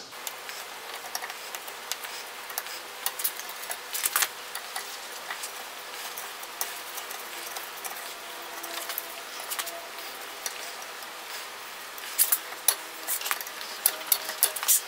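Wood chisel paring and scraping the sawn V-notch of a small workpiece held in a bench vise: faint, irregular scrapes and clicks over a steady hiss, busier a few seconds in and again near the end.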